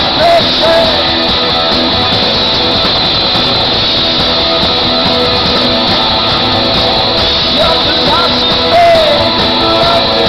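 Loud live rock band, electric guitars playing through a PA, with sung vocal lines in the first second and again near the end.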